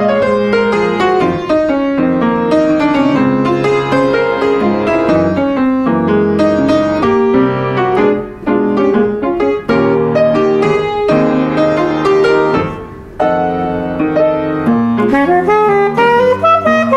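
Jazz piano taking a solo with quick runs of notes. A saxophone comes in near the end.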